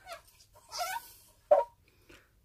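A dog whining briefly, then one short sharp yip about one and a half seconds in.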